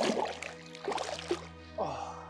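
Lake water sloshing and splashing in short bursts as a carp is released from the hands and swims off, with steady background music underneath.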